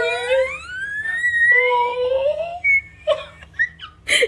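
A man mock-crying in a high, wavering voice and a baby whimpering on the edge of tears, with one wail rising steeply in pitch over the first second or so.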